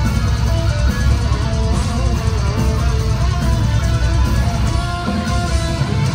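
Death metal band playing live, recorded from the audience: distorted electric guitars play a riff over bass and drums, loud and without a break.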